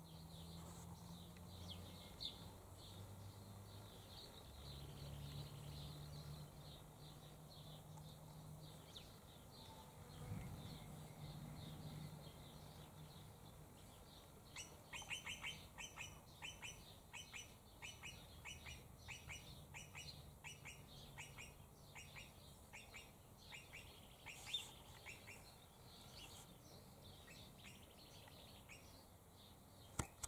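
Faint garden quiet: a fly buzzing softly as a low hum in the first half, then a small bird giving a rapid string of short, high chirps for about ten seconds from halfway through.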